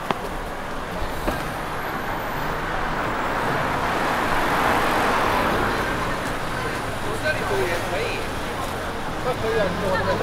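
A car passing close by on the street, its tyre and road noise swelling to a peak about halfway through and fading again, with faint voices of passers-by near the end.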